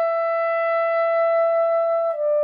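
Solo soprano saxophone holding one long, steady note in a slow, lyrical melody.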